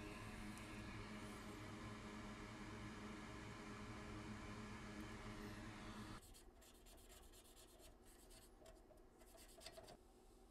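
Near silence: a faint steady hum of room tone. About six seconds in it drops away, and faint rapid scratching follows.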